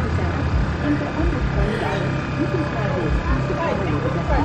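Several people chatting and laughing in the background over a steady low hum.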